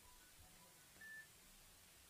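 Near silence: room tone, with one faint, short, high beep about a second in.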